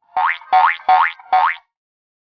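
Four short cartoon 'boing' sound effects, one about every 0.4 s, each a quick upward-sliding tone.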